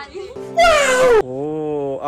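A loud meow-like cry falling in pitch, about half a second long, with a steady held tone before it and a lower one after it.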